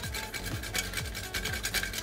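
A tonka bean being grated on a fine hand grater: quick, repeated scraping strokes, with soft background music underneath.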